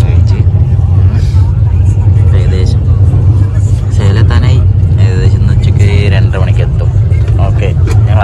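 Passenger train running at speed, heard from inside the coach: a loud, steady low rumble, with voices talking over it.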